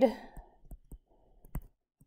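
A few light, scattered clicks of a stylus tip tapping on a tablet screen while handwriting, the sharpest about a second and a half in.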